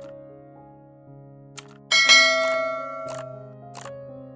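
Background music: held notes, with a bright bell-like chime struck about halfway through that rings on and fades, and a few light percussion ticks.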